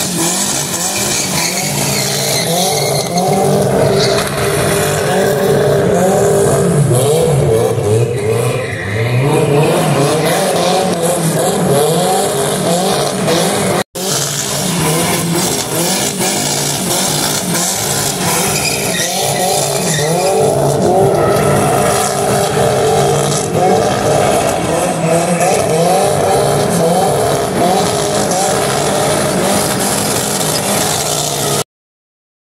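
A Chevrolet Chevette drift car's engine revving hard and bouncing up and down in pitch while its rear tyres squeal and skid through donuts. The sound cuts out for an instant about halfway through.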